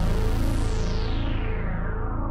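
Roland Juno-106 analog synthesizer holding a deep bass note with its sub-oscillator added, its bright top slowly dying away as the note sustains.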